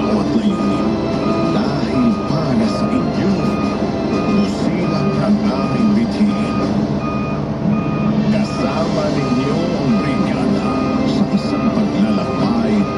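Excavator's travel/reversing alarm beeping steadily at about two beeps a second over the machine's running diesel engine. Music with a voice plays along with it.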